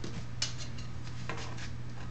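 A steel ruler and stiff oak tag paper being handled on a cutting mat: a sharp tap about half a second in, then short scrapes and rustles, with a second cluster past the middle.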